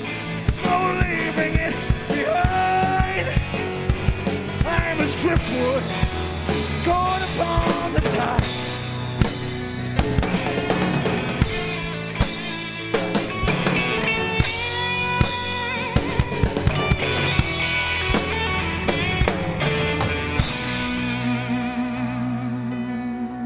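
Live blues band playing an instrumental break: a lead electric guitar with bending notes over drum kit and bass, cymbals crashing through the middle. Near the end the drums and cymbals drop back, leaving a held low tone.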